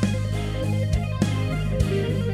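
Electric guitar music over a sustained low note, with sharp hits every second or so.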